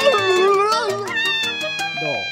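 Cartoon background music with a steady beat, and over it a cartoon character's wavering, squealing cry during the first second.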